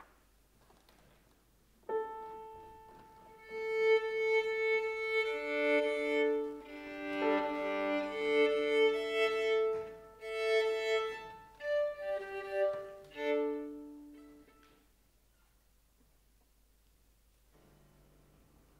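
A piano sounds a single tuning note, then a violin is tuned to it. The violinist bows open strings, mostly two at a time in fifths, and works across the strings in sustained strokes for about ten seconds before stopping.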